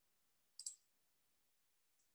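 Near silence, broken about half a second in by two quick, light clicks close together.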